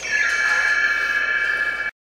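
A single steady, high-pitched held tone with many overtones, played from the story cassette through the speaker of a 1986 Worlds of Wonder Mickey Mouse animatronic toy. It holds for almost two seconds, then cuts off suddenly.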